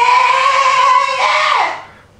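Harmonica holding one long note that wavers slightly, then bends down in pitch and fades out near the end.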